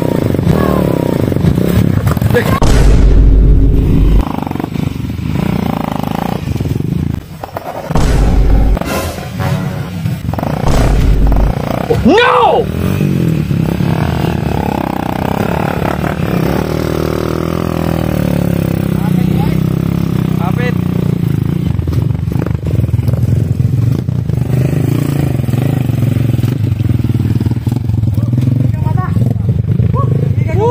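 Small motorcycle engines running under heavy loads of sacks on rough dirt tracks, a steady low engine sound that changes abruptly a few times as clips cut, with people's voices and a shout of "Oh!" about twelve seconds in.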